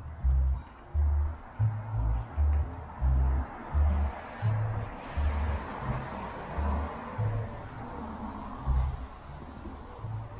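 Background music with a bass line pulsing about twice a second.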